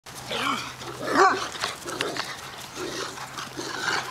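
Several dogs vocalizing as they play-fight, with short cries that rise and fall in pitch and growly grumbles; the loudest cry comes about a second in.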